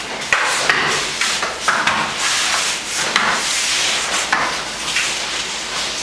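Jiu-jitsu gis rustling and rubbing as two grapplers scramble on a mat, with several short sharp knocks of hands and bodies hitting the mat.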